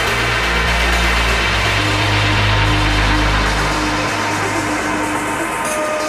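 Electronic dance music from a melodic techno and progressive house DJ mix, with no vocals. A held bass line fades out about four seconds in, leaving sustained synth tones, and a new higher synth note comes in near the end.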